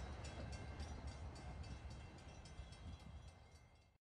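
A receding TRE commuter train's low rumble, with a level crossing bell ringing about four strokes a second over it; both fade away near the end.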